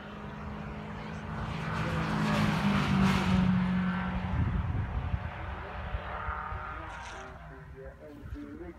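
MG race car passing at speed: the engine note grows as it approaches, is loudest and drops in pitch as it goes by about three seconds in, then fades away.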